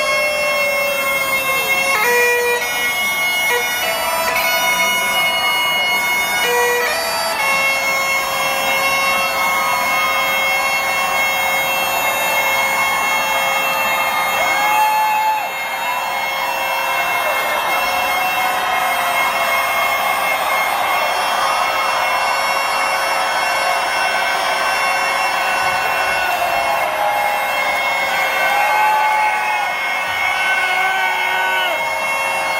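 Bagpipes played live through a concert PA: a drone held steady on one note under a slow, gliding chanter melody, heard from among the crowd.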